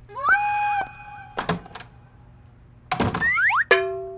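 Comic sound effects: a short held electronic tone near the start, a sharp click about halfway, then a swish followed by gliding and held buzzy tones near the end.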